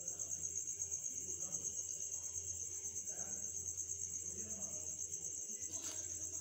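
Crickets chirping in a steady, rapidly pulsing high-pitched trill.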